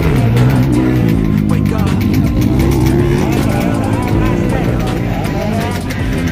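Busy race-paddock din: motorcycle engines running and revving, mixed with loudspeaker music and voices.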